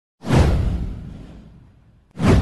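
A whoosh sound effect with a deep low rumble under it, swelling suddenly about a fifth of a second in and fading away over about a second and a half.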